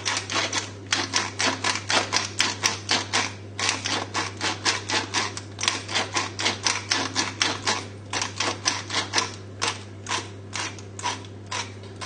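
Hand-twisted pepper mill grinding peppercorns: a long run of crunching ratchet clicks, about four a second, pausing briefly twice.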